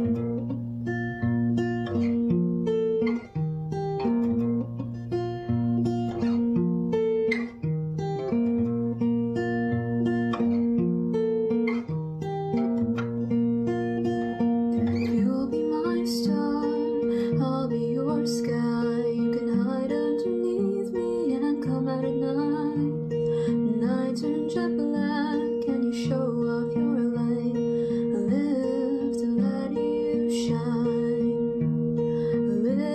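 Acoustic guitar with a capo, picking a repeating pattern of single notes. A young woman's singing voice joins the guitar about halfway through.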